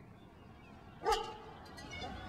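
A dog barks once, sharply, about a second in, over low steady background noise.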